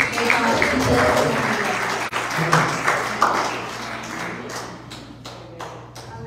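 Small congregation applauding, with a few voices calling out; the clapping thins to scattered single claps and fades near the end.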